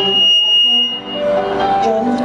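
A steady high-pitched electronic beep held for about a second in a stage show's played-back soundtrack, then the backing music comes back in.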